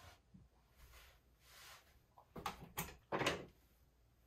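Faint rustling of movement, then a few light knocks and a short louder rustle of handling about three seconds in.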